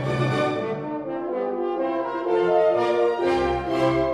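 Several French horns playing held notes together in harmony, the chord changing every half second or so.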